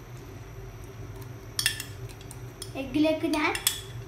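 Metal spoon clinking against a bowl and frying pan several times, a few sharp clinks about one and a half seconds in and a cluster more in the last second or so, over a steady low hum.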